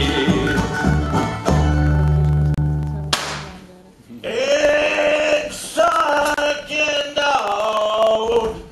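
Live country band with banjo, upright bass and drums playing, closing on a held low chord and a cymbal crash about three seconds in that rings away. A voice then sings long, wavering held notes.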